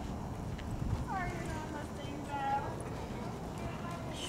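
Horses' hooves walking on a dirt arena floor, with faint, untranscribed voices in the background.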